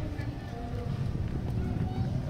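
Footsteps of someone walking on paving, with passers-by talking faintly and a steady low rumble underneath.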